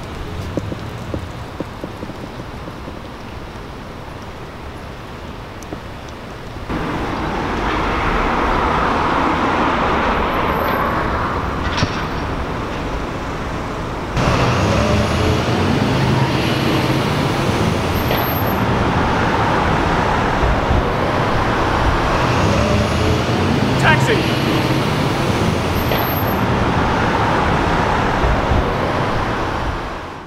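Outdoor city street ambience: a quieter background at first, then, after abrupt jumps at about seven and fourteen seconds, louder steady road traffic with cars passing.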